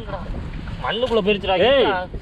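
Wind buffeting the microphone, with a voice in the second half, its pitch rising and falling.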